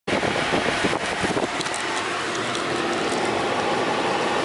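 Steady rushing cabin noise inside a car being driven, with a few sharp clicks in the first second and a half.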